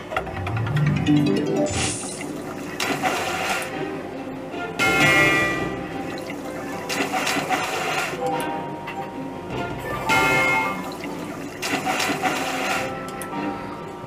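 Merkur 'Hexenkessel' slot machine's free-game sounds: tuneful jingles that come back every couple of seconds as the reels spin and stop, over watery, bubbling cauldron effects.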